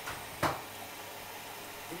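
Beko front-loading washing machine on a Mini 30° wash, its drum turning with a steady low hum, and a single sharp knock about half a second in.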